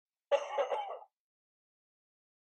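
Recorded male cough sound effect (the cough-male.wav file) played by the TJBot robot: one short cough of under a second, with a sharp start, about a third of a second in.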